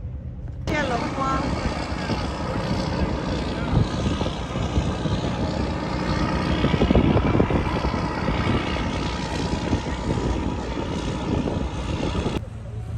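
Steady drone of a boat engine mixed with wind on the deck, getting louder about a second in.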